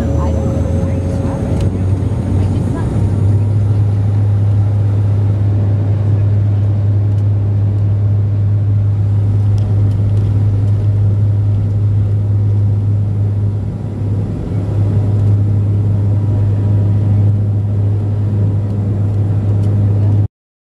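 Cabin noise of a Porter Airlines Dash 8 Q400 turboprop moving on the ground: a loud, steady low propeller drone that strengthens about three seconds in, with a faint rising high whine near the start.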